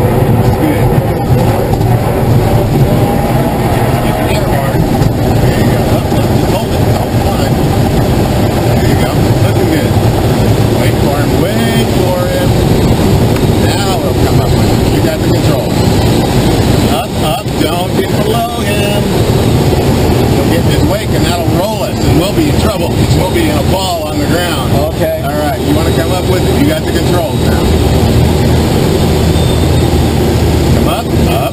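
Glider on aerotow: a loud, steady rumble and rush of air in the cockpit as it rolls down a dirt strip and climbs away behind the tow plane, the sound shifting in character about halfway through.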